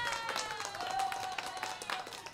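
Light clapping, with a held tone that slides down in pitch through the first second and a half and then fades.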